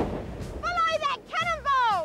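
A short noisy burst at the start, then three high-pitched wordless cries from a voice, bending up and down in pitch, the last one falling away.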